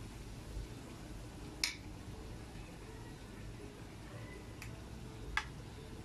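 Kitchen sounds while battered cempedak fries in a pan of oil: a faint low steady background with three sharp clicks, the loudest near the end.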